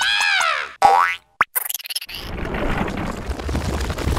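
Cartoon character's short cry that rises and falls in pitch, followed by a springy rising boing sound effect, a sharp click, and a rumbling noise that fills the rest.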